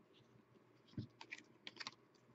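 Hockey trading cards being flicked through by hand, their edges making faint small clicks: a soft tap about a second in, then a quick run of clicks near the end.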